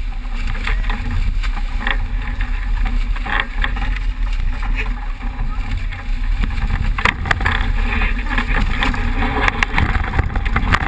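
Strong wind buffeting the microphone over water rushing past the hull of a racing sailboat running fast in heavy wind and waves. Short knocks and splashes break through now and then, most thickly about seven seconds in.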